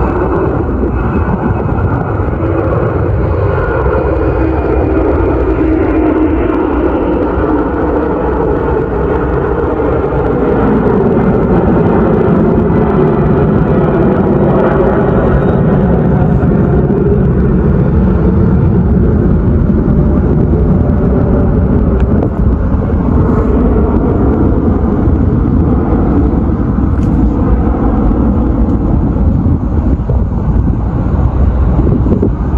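Continuous roar of a heavy jet's engines as it passes overhead after departure, rough with wind buffeting the microphone. A faint high whine shows early on, and the roar grows louder about ten seconds in.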